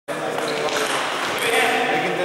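Indistinct voices in a large sports hall, with a few sharp ticks of table tennis balls bouncing.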